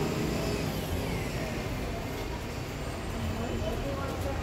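Background of a busy shopping centre: faint, indistinct voices over a steady low rumble.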